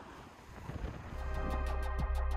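A soft rushing outdoor noise, then background music comes in about a second in with a heavy steady bass and a regular electronic beat.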